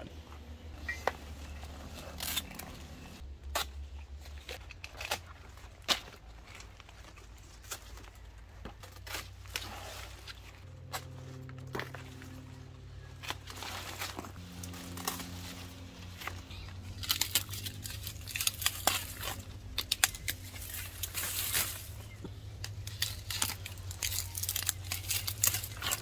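Large monstera leaves and stems rustling and crinkling as frost-damaged growth is cut with hand pruners and pulled away, with scattered sharp clicks and snips, over faint background music.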